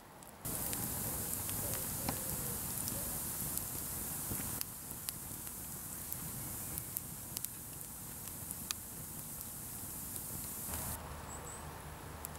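Dry spruce-log Swedish torch burning, a steady rush of flame with frequent sharp crackles and pops.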